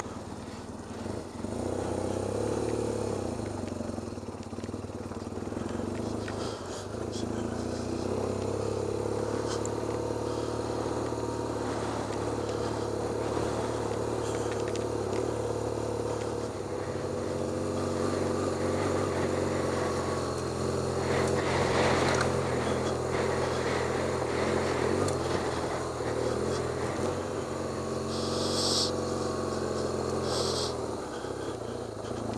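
Dual-sport motorcycle engine running as it is ridden up a gravel track, heard from on the bike, its note shifting a few times as it changes speed, with rough road and wind noise underneath.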